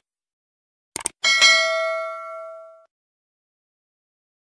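Subscribe-animation sound effect: a quick double mouse click about a second in, then a bell notification ding that rings out and fades over about a second and a half.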